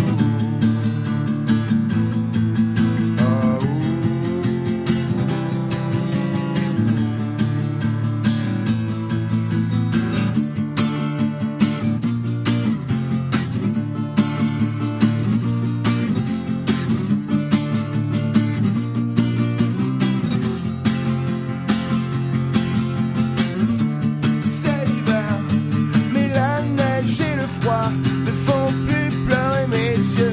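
Acoustic guitar strummed in a steady rhythm, changing chord every few seconds: the instrumental intro of a solo song. A wavering higher melody line joins near the end.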